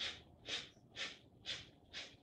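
Kapalabhati yoga breathing: sharp, forceful exhales through the nose, about two a second in an even rhythm.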